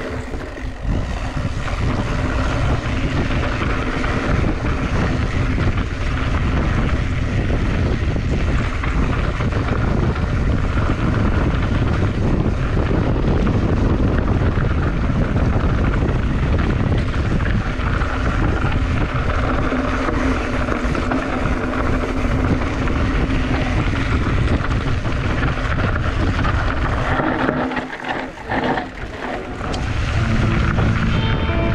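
Wind buffeting the microphone while a mountain bike rolls fast down a dirt and gravel trail, a steady low rumble of wind and tyres on loose stones that dips briefly near the end.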